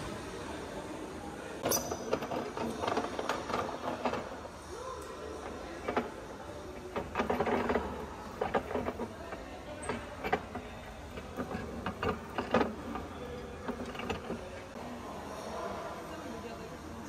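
Grain poured into a hand-cranked mill and ground, heard as a run of irregular rattling and clacking that fades out near the end.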